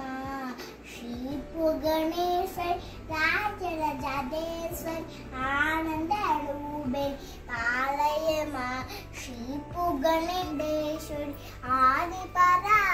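A young girl singing a devotional song in phrases, with short breaths between them.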